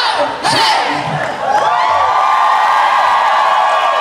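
Concert crowd cheering, screaming and whooping as the band's music stops, with many voices holding long high screams from about a second and a half in.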